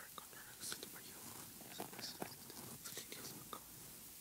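A priest's low whispered prayer, with faint hissing sibilants and several light clicks scattered through it.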